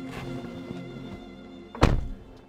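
A Lexus ES 330 car door shutting with a single solid thunk near the end, over background film music.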